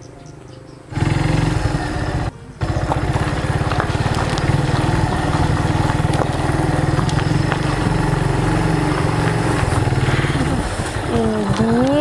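Motorcycle engine running as the bike rides up and pulls in, a steady low pulsing beat that starts about a second in, with a brief break just after two seconds.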